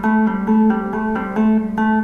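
Hollow-body electric guitar playing a blues trill: two notes a step apart alternating evenly through rapid hammer-ons and pull-offs on the fretting hand, sustained without fresh picking.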